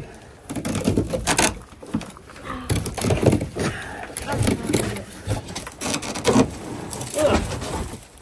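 Old carpet and debris being pulled and handled on a van floor: a run of irregular scraping, tearing and rustling noises with short crackles.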